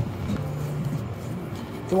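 City street ambience: low traffic noise from cars on the road, with faint music under it.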